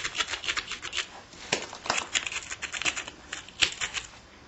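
Stone abrader scraped quickly back and forth along the edge of a flint Clovis point in many short, sharp strokes, grinding the platform before the point is fluted. The scraping stops suddenly at the end.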